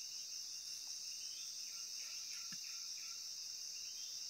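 Steady high-pitched drone of a tropical rainforest insect chorus, faint and unbroken.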